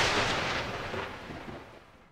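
A thunderclap sound effect, its crash dying away to nothing over about two seconds.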